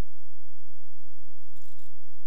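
Light aircraft piston engine and propeller running steadily, heard inside the cockpit as a low buzzing drone. A brief hiss comes near the end.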